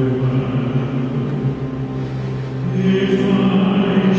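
An operatic tenor singing long held notes with a military band accompanying; the sound swells about three seconds in.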